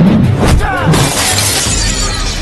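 Dubbed fight-scene sound effects over background music: a hit about half a second in, then a glass-shattering effect from about a second in.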